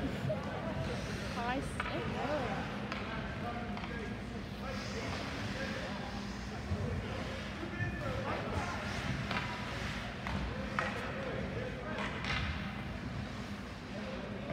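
Indistinct voices of hockey players and spectators in an ice rink during a stoppage in play, over a steady low hum, with a few scattered knocks.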